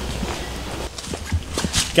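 Footsteps on a concrete garage floor: a few short, irregular taps about halfway through.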